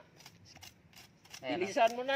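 Knife blade scraping and clicking in gritty sand and shell fragments while digging for buried clams: a few faint, short scrapes in the first second and a half, then a man's voice begins.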